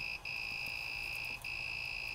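Creality Ender-3 3D printer's buzzer beeping on and on, a steady high tone broken by a short gap about every second and a quarter. This is the printer's alert that it is paused for a filament change and waiting for new filament.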